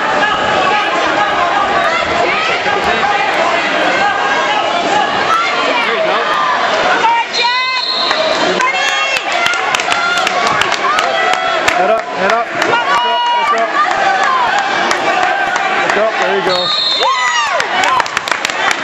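Wrestling spectators and coaches shouting over one another in a gym, many voices overlapping, with a few louder yells about halfway through and near the end.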